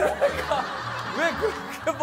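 People laughing while a woman's voice repeats 'aniya' (no), over background music.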